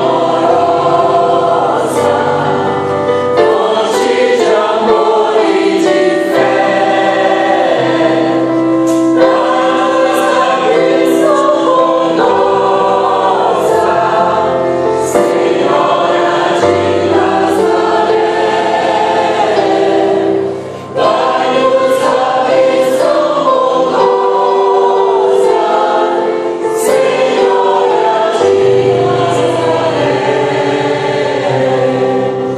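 Mixed choir of men and women singing a hymn in harmony, with held low bass notes from a digital piano underneath; the sound breaks off briefly about two-thirds of the way through, then the singing resumes.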